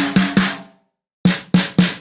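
Sampled snare drums played back in the Addictive Drums 2 kit-piece browser: three quick snare hits from a 14x6.5 Pearl Signature snare, then about a second later three more from a 14x7 Craviotto Custom Shop snare, each hit ringing briefly.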